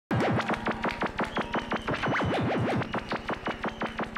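Synth-punk/EBM electronic music: a fast, even beat of sharp clicking hits, about eight a second, with a synthesizer tone that zigzags rapidly up and down over a low steady drone. It cuts in abruptly just after the start.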